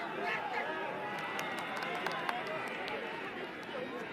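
Crowd of football spectators shouting and chattering together around the pitch, with a run of sharp cracks scattered through the middle and second half.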